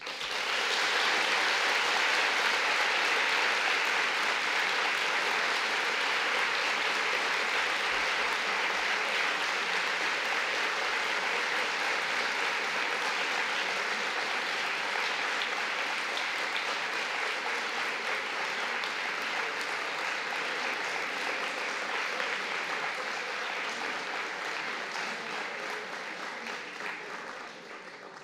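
Large audience applauding: one long round of clapping that starts at once, holds steady, and dies away in the last few seconds.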